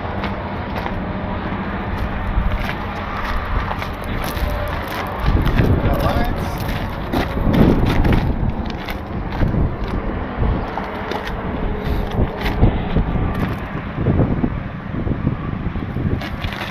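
A truck engine running with a steady hum, over noisy outdoor handling and scraping sounds, with bursts of low rumble from about five to eight seconds in.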